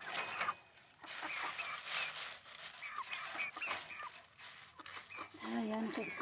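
Young hens calling in many short, high chirping clucks, with rustling of the plastic sheet over their coop.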